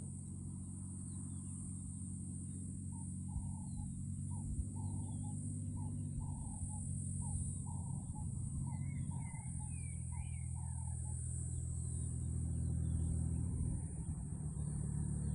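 Distant light aircraft's engine droning low and steady on approach, growing a little louder near the end. Birds chirp and call over it throughout, with a run of repeated calls from a few seconds in until about eleven seconds in, and a steady high hiss underneath.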